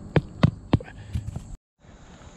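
A hammer driving stakes through a hay-filled erosion mat into the ground: a run of sharp knocks about three a second, the first three the strongest, then a few lighter taps, before the sound cuts off suddenly.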